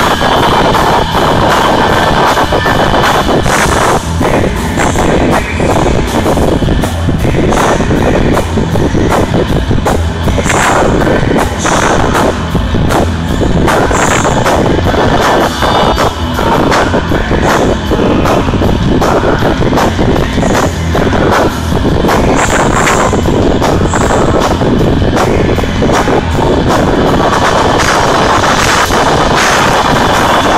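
Live rock band with electric guitar and drums, loud and continuous, with a steady pounding beat. The recording is overloaded, so the sound is clipped and distorted.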